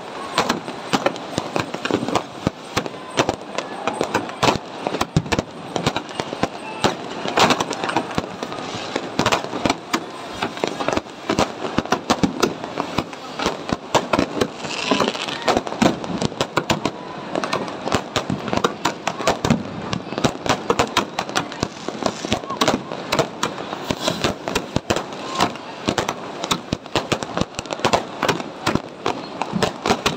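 Firecrackers and aerial fireworks going off in a dense, continuous barrage: many sharp bangs a second, overlapping at irregular spacing with no pause.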